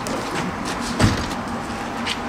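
Steady city street noise with traffic, and a single dull thump about a second in.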